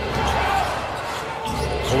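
A basketball being dribbled on a hardwood court, over steady arena background noise.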